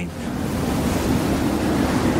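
Wind sound effect: a strong wind blowing against a window pane, a steady rushing noise that swells in over the first half second.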